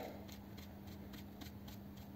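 Quiet room tone with a faint steady hum and a few faint, light ticks.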